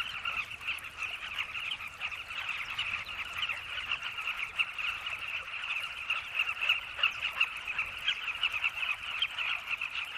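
A dense, continuous chorus of a carmine bee-eater nesting colony: many birds calling at once in short overlapping calls, with no break or change.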